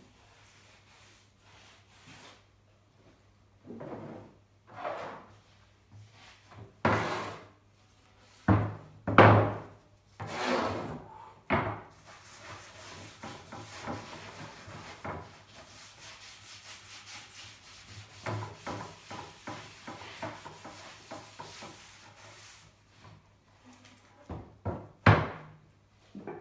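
Gloved hands and a cloth rubbing oil into a burr horse chestnut board. There is a series of separate swishing wipe strokes at first, then a steadier stretch of rubbing, and a few sharp knocks near the end, all over a low steady hum.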